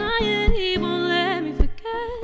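Live acoustic guitar strummed under a singer's voice, the sung notes wavering with vibrato, with strums about a second apart.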